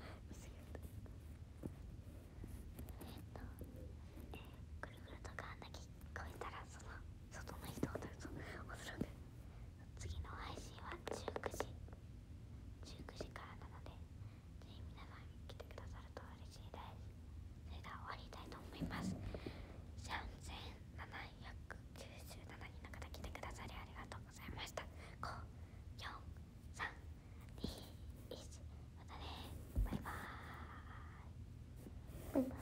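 A young woman whispering softly on and off, over a steady low hum.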